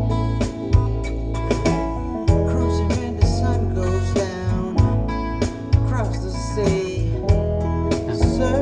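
A music track playing through a car audio system with a Top Palace processor and an 8-inch subwoofer. Deep bass notes are held under plucked guitar, and the track is played to test how steady the sub-bass and mid-bass are.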